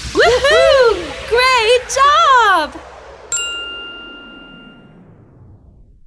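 Closing logo jingle: a playful cartoon voice makes four short calls that swoop up and down in pitch, then a single bright bell-like ding sounds a little past halfway and rings out, fading away.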